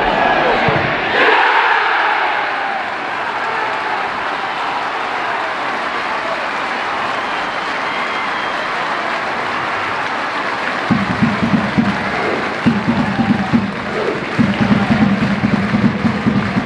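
Football crowd cheering after a goal, a surge of noise about a second in settling into a steady din. About two-thirds of the way through, a rhythmic low beat starts up under the crowd, with the fans beginning to chant.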